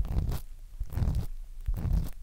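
Ear pick scraping inside the ear on a binaural dummy-head microphone (3Dio), in repeated short scratchy strokes about half a second apart.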